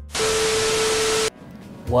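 A burst of TV-style static hiss with a steady mid-pitched tone under it. It lasts about a second and cuts off suddenly, a broadcast-cut transition effect.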